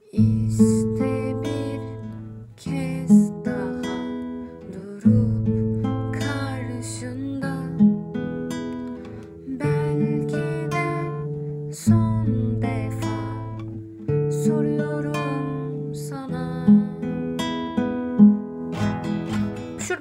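Classical nylon-string guitar fingerpicked in slow arpeggios, with a new chord about every two and a half seconds through an Am–E–Am–E, Dm–Am–Dm–E progression.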